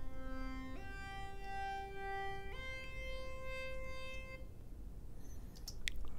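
Synthesizer lead from a 'Funk Lead' software instrument playing back: three long held notes, each stepping up in pitch, changing about a second in and again about two and a half seconds in, and stopping about four and a half seconds in.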